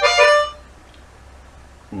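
Chromatic harmonica playing the last notes of a descending blues-scale run, which stops about half a second in. Quiet follows until speech starts at the very end.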